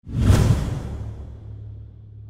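A swoosh transition sound effect: a sudden rush that fades away over about a second, leaving a low hum.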